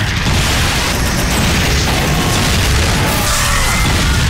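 Explosion sound effects in an action film trailer: a loud, sustained blast that starts suddenly, mixed over trailer music.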